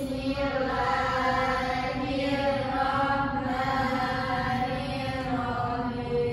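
A chanted recitation sung in two long, drawn-out phrases at a nearly steady pitch, with a short break about two seconds in.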